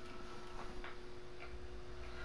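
A few faint clicks of buttons being pressed on a small handheld device, over a steady low room hum.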